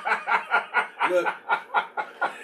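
Men laughing: a quick run of short chuckling pulses, about five or six a second, with a single word spoken partway through.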